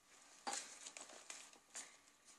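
Faint rustling of thick, layered paper as a page flap of a handmade junk journal is turned and pressed flat: a few soft rustles, the first and loudest about half a second in.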